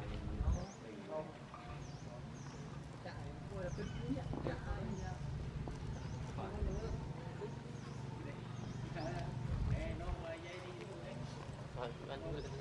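Voices of people talking in the background, with short high chirps repeating about once a second.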